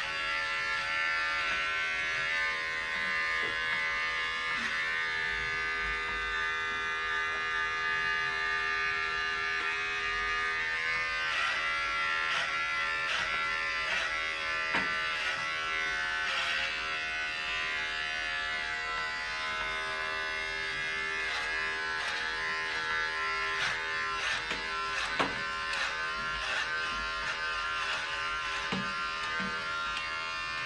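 Corded electric hair clipper running steadily as it is passed over the hair on top of the head, a continuous buzzing hum with brief dips in pitch now and then.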